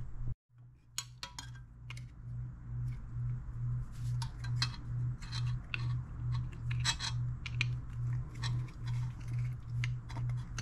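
Pliers clicking and clinking against the small metal hose clamp on a small-engine carburetor's fuel line as the clamp is worked loose. A low hum pulsing about three times a second runs underneath.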